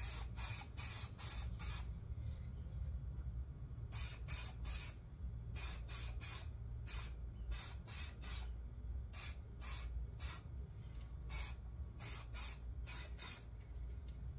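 Aerosol can of Ironlak spray paint sprayed in many short hissing bursts, a few per second in groups with brief pauses, laying down a base coat through a stencil.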